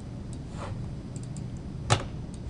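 A few faint clicks, then one sharp click just before the end, over a steady low hum: computer mouse clicks opening a browser window.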